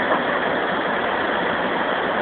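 Water pouring over a low river weir: a steady, even rush.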